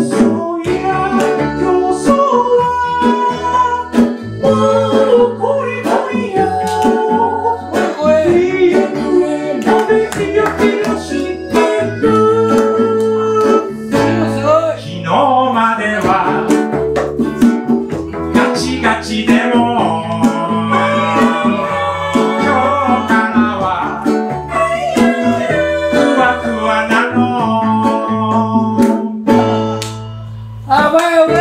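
A live acoustic band playing a song: strummed acoustic guitars, accordion and acoustic bass guitar, with a man singing.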